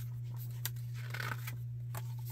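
Faint paper rustles and a few soft clicks as the pages of a small crochet pattern book are handled, over a steady low hum.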